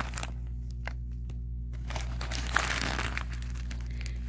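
White paper stuffing inside a mini backpack crinkling as a hand pushes it aside, with a few light clicks and a burst of crinkling about two seconds in, over a steady low hum.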